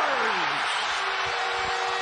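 Hockey arena crowd cheering loudly for a home-team goal. About a second in, the arena's goal horn starts and holds a steady chord under the cheering.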